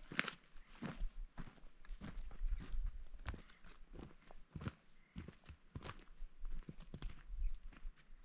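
Footsteps crunching through dry leaves, twigs and brush: an uneven run of short crackling steps, a few each second.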